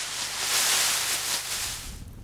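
Dry pea vines rustling as hands work through the heap, threshing the peas loose. The rustle fades out about three-quarters of the way through, leaving a quieter low rumble.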